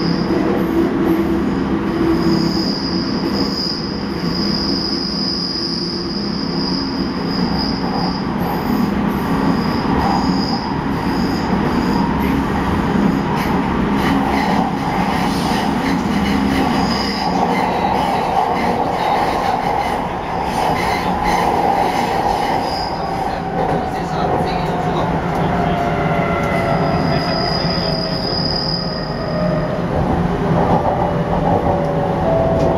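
Hokuetsu Express electric train heard from inside the car, running on a curve: steady rumble of wheels on rail, with a high wheel squeal that comes and goes. From about halfway through, a motor whine falls slowly in pitch as the train slows on its approach to the station.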